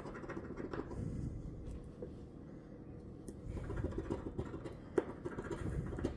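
A large metal coin scraping the coating off a paper lottery scratch-off ticket in short, irregular strokes, easing off briefly about a third of the way in before scratching again.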